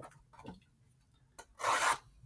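Cardboard trading-card hanger box being picked up from a stack: a couple of light taps, then a short scraping rub near the end as the box slides against the others.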